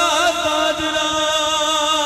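A man singing a ghazal live, holding one long note that bends in quick ornaments for about the first half second and then holds steady, over musical accompaniment.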